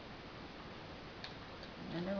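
A couple of faint light clicks over steady background hiss, made by small acetate flower pieces and a pin being handled.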